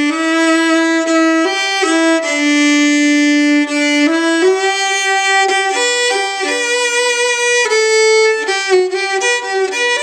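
Old Klingenthal violin, made around 1875–1880, played with a bow: a melody of mostly long held notes, one held for over a second, with quicker notes near the end.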